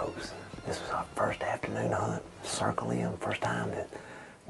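A man speaking in a hushed whisper.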